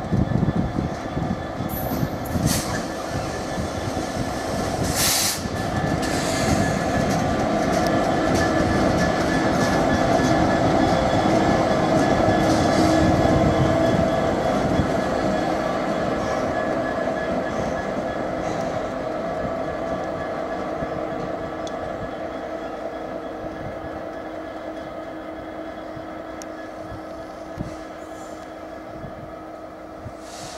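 Class 66 diesel locomotive with its EMD two-stroke engine working past on a freight train. Early on there is a dense rumble of wheels over the track with a few sharp squeals. Then the engine's steady drone builds to a peak midway and fades slowly as the locomotive draws away.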